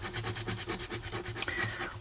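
Scratch-off lottery ticket's latex coating being scraped off with a scraper in quick back-and-forth strokes, several a second.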